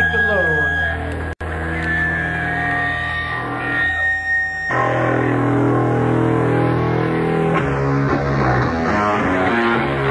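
Live noise-punk band playing loud: guitar feedback tones ring over a droning bass. The sound cuts out completely for a split second about a second and a half in. Heavy bass notes come in about halfway through as the next song gets under way.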